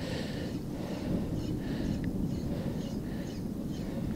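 Wind rumbling on the microphone over small waves lapping around a wading angler, with faint, irregular light ticks.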